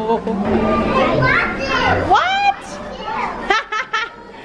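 Young children's voices chattering and squealing, with one high rising squeal about two seconds in, followed by a few sharp clicks near the end.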